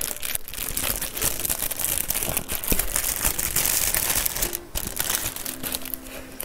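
Thin plastic wrapping crinkling and crackling as a small package is handled and opened by hand. Dense, irregular crackles go on throughout.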